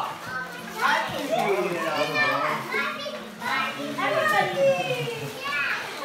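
Several children talking and calling out over one another.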